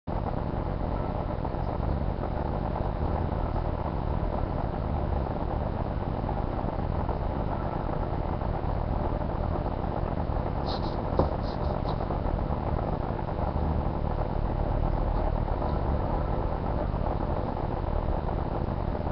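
Steady low rumble and hiss of background noise, with a single sharp click about eleven seconds in.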